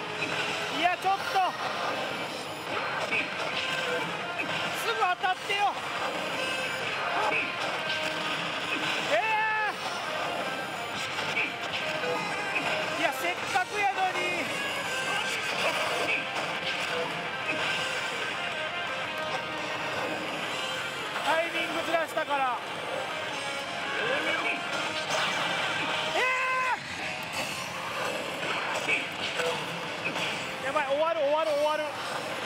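Hokuto no Ken: Shura no Kuni pachislot machine in a battle round, playing its game music with short voices and crash effects every few seconds.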